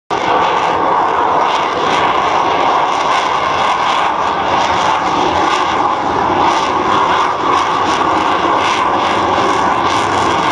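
Lockheed Martin F-35A's single Pratt & Whitney F135 turbofan engine, heard as loud, steady jet noise as the fighter climbs overhead.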